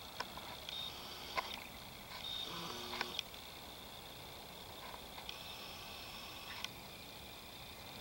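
Quiet outdoor ambience with faint, short high-pitched calls coming and going, a few light clicks, and a brief low tone a little before the middle.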